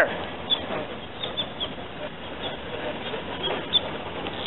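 Steady outdoor street background noise with a few faint, short high chirps scattered through.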